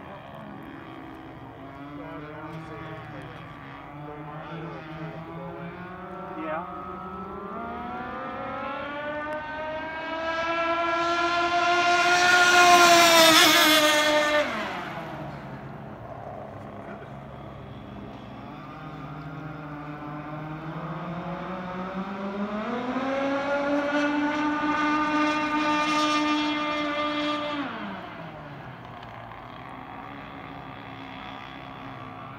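Radio-controlled speed boat's motor running flat out in two passes, a whine that climbs in pitch as the boat speeds up. It is loudest a little before halfway, then drops sharply in pitch and level. A second, slightly quieter pass rises and holds in the last third before falling away suddenly near the end.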